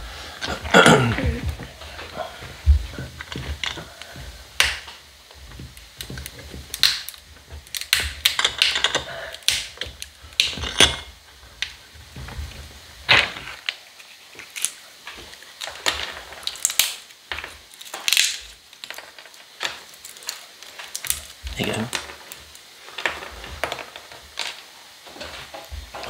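Nuts in their shells being cracked in a small metal bench vice used as a nutcracker: a series of sharp cracks and clicks of breaking shell at irregular intervals.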